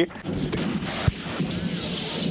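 A steady rushing hiss of loose, salt-like material pouring down from a chute, over a low steady drone, with a single click about a second in.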